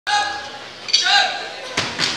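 A steady tone for about half a second, then a shout and two sharp thuds, one about a second in and one near the end, echoing in a large gym hall as athletes start moving off the floor.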